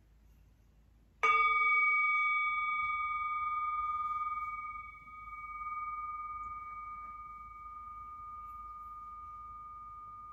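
A small metal bell of the singing-bowl kind struck once about a second in, then ringing on with a long, slowly fading tone. The higher overtones die away first, and the ring dips and swells once midway.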